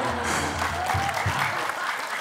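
Studio audience applauding and laughing, with many hands clapping at once.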